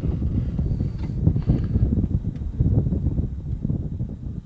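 Wind buffeting the microphone: a loud, low, gusty noise that rises and falls irregularly.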